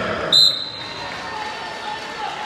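Referee's whistle: one short high blast about a third of a second in, starting the wrestling from the referee's starting position.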